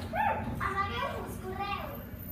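Young children's high-pitched voices: two short yelps near the start, then a quick string of calls that ends shortly before the end.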